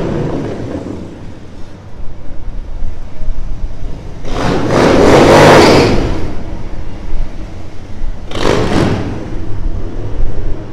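Two cruiser motorcycles riding past close by, their engines swelling to a loud peak about five seconds in and then fading. A shorter rush of noise follows near the end, over a low steady rumble of street traffic.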